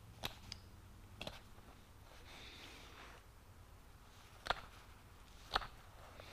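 Faint scraping of a hand deburring blade in the bore of a machined aluminum block, with a few sharp metallic clicks as tool and part knock together; the two loudest clicks come in the second half.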